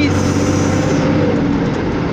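Steady drone of a vehicle's engine with road and tyre noise, heard inside the cabin while driving at highway speed.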